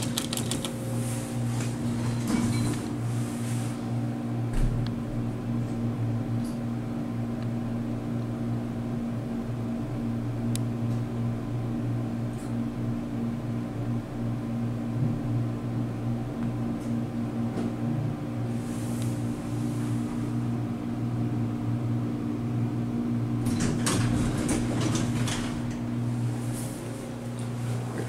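Steady low electrical hum inside a hydraulic passenger elevator cab, with a few light clicks and rattles near the end.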